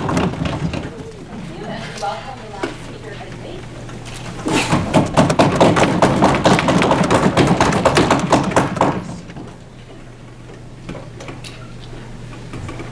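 Audience applause starting about four and a half seconds in and lasting about four seconds before dying away, over a steady low room hum.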